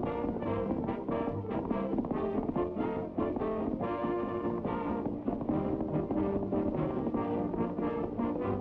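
Orchestral cartoon score with brass to the fore, playing a busy run of short, quick notes.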